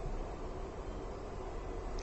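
Room tone of a talk recording: a steady, low background hiss with a faint low hum and no distinct events.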